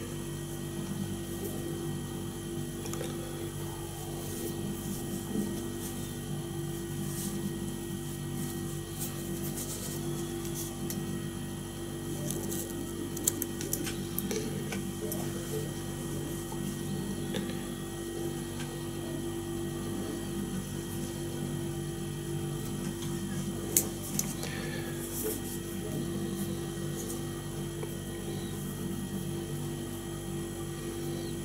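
A steady hum made of several fixed tones, with scattered small clicks and taps from handling materials and tools while tying a fly; a few sharper ticks stand out about 5, 13 and 24 seconds in.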